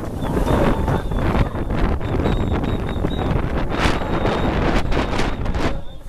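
Strong wind buffeting the camera's microphone in a constant low rumble.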